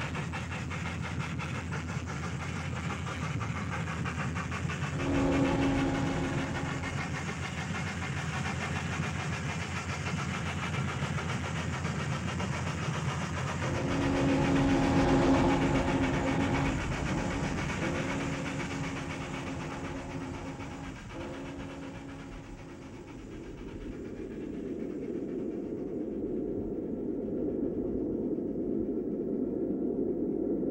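Steam locomotive running, its whistle sounding a chord in a short blast about five seconds in and a longer blast, broken a few times, from about fourteen to twenty-one seconds. Near the end the sound turns to a duller, steady rushing noise.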